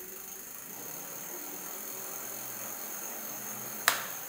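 E-bike rear hub motor running steadily under throttle, a hiss with a thin high whine over it. A single sharp click comes near the end.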